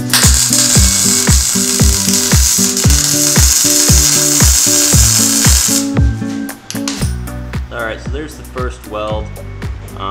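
Welding arc crackling steadily as a bead is laid around the lap joint between a mild-steel exhaust pipe and a Cherry Bomb glass-pack muffler; it stops about six seconds in. Background music with a steady beat plays throughout.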